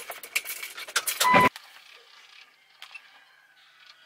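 Keys jangling on a keyring as the ignition key is turned to on, followed about a second and a half in by a short, loud electronic beep.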